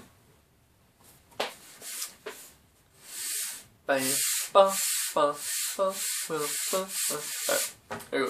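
A cardboard tube being handled and rubbed as it is brought up to be played, making scraping, rubbing noise. About halfway through come a run of short pitched vocal-like sounds, about two a second, each with a hiss.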